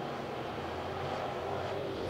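Dirt late model race cars with GM 602 crate V8 engines running around the oval, a steady drone of several engines together.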